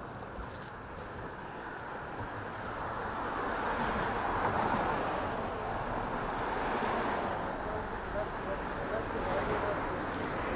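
A steady murmur of indistinct voices over street noise, growing louder a few seconds in, with short scuffs from footsteps and handling of the phone.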